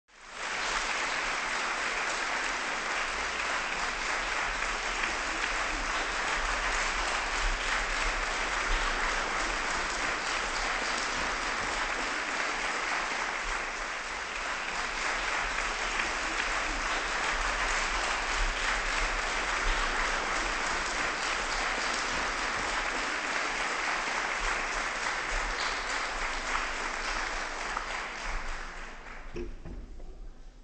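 Audience applauding steadily in a concert hall for the string quartet coming on stage. The applause dies away near the end.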